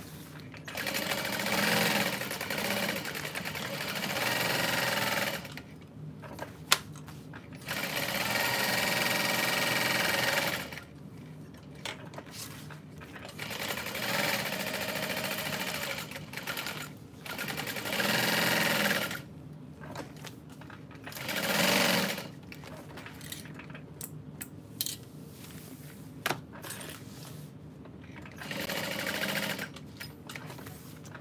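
Juki industrial sewing machine stitching at a stitch length of four, running in stop-start bursts from about a second to five seconds long with short pauses between seams. A couple of sharp clicks sound in the pauses.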